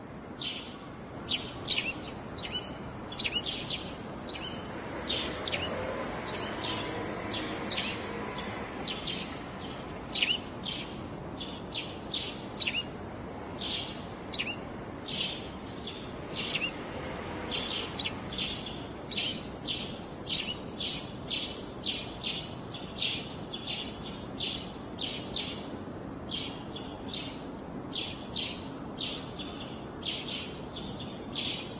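A small bird chirping over and over, in short sharp notes roughly twice a second, over a steady background hiss.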